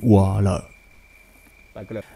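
A man narrating in Hmong, who stops about half a second in; in the pause a faint steady high tone carries on before a short word near the end.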